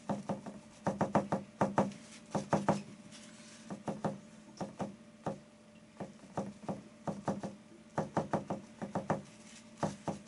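A paintbrush dabbing acrylic paint onto a stretched canvas, each dab tapping the canvas: quick runs of two to five taps, repeated every second or so. A faint steady hum lies underneath.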